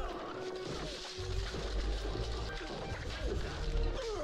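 Film fight-scene soundtrack at low level: hand-to-hand fighting with whacks, knocks and crashes against wooden boards and partitions, over background music.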